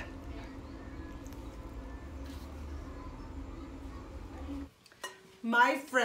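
Faint handling sounds of gloved hands pressing soft cookie dough into a ball in a glass mixing bowl, over a steady low hum. The hum cuts off suddenly near the end, and a woman begins to speak.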